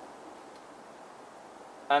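Faint steady background hiss, room tone in a pause between spoken sentences; a man's voice starts again near the end.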